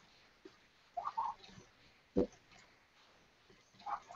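Quiet room with a few faint, short sounds: a brief higher-pitched sound about a second in, and a single sharp click about two seconds in.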